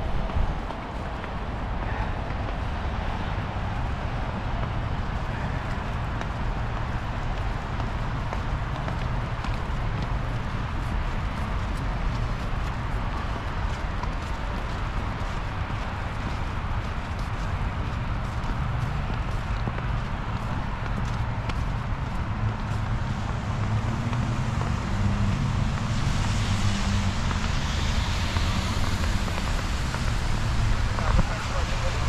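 Snowy city street ambience heard while walking: a steady low rumble of wind on the microphone under a haze of traffic noise, with a brighter hiss coming in near the end.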